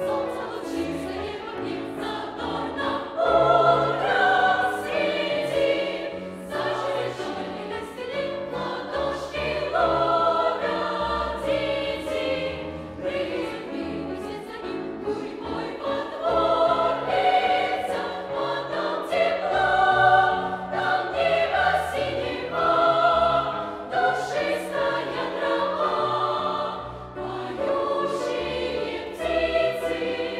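Youth choir singing in parts with piano accompaniment, in phrases with short breaths between them.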